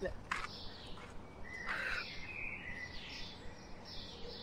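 Faint birdsong in woodland: short, high chirping calls come and go from about a second and a half in, over a low steady background hiss.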